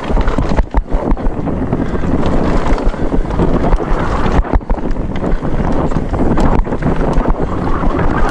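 Downhill mountain bike ridden down a dry dirt trail: wind rumbling on the microphone over the rolling tyres, with frequent short clatters and knocks from the bike over the rough ground.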